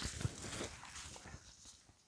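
Footsteps in dry fallen leaves, a few rustling, crunching steps that fade away over the two seconds.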